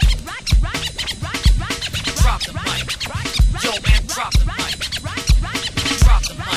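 Old-school hip-hop beat with turntable scratching: quick back-and-forth scratch glides over a heavy kick drum, with no rapping.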